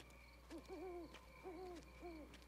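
Owl hooting three times, faint low hoots that waver in pitch, about half a second in, again near one and a half seconds, and once more at the end, over a steady high insect chirr.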